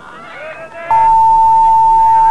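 Faint voices, then about a second in a loud, steady, single-pitched electronic tone, like a beep, comes in together with hiss and a low hum.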